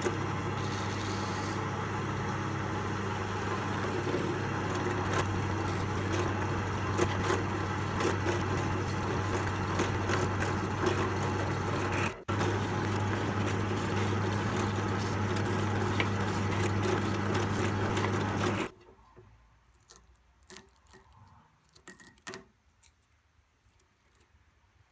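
Drill press motor running with a steady hum while it drills holes through plastic chopping-board runner strips, cutting out briefly about halfway and stopping about three-quarters of the way through. Only a few faint handling clicks follow.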